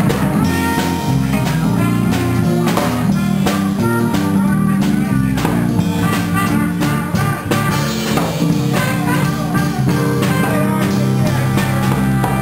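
A small live band playing an up-tempo number: an electric bass line under a drum kit with cymbals, and electric guitar.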